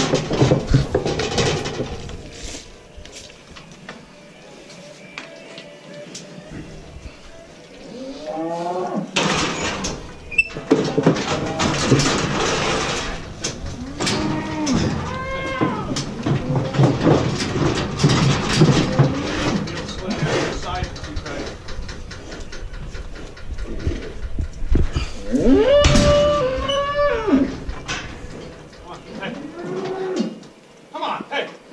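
Cattle mooing: several moos, the longest and loudest near the end, its pitch rising and then falling away. Between the calls, a run of knocks and rattles.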